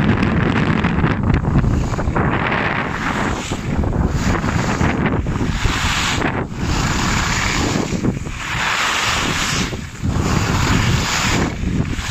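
Wind buffeting the microphone of a camera skiing downhill, over the hiss of skis carving on groomed snow. The hiss swells and fades with each turn, about once every second or two.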